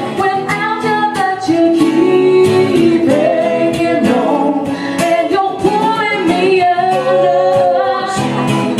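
A woman singing live into a handheld microphone, holding long wavering notes, over a strummed acoustic guitar.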